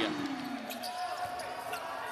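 A basketball being dribbled on a hardwood court under low arena crowd noise, with a commentator's drawn-out call falling away in the first second.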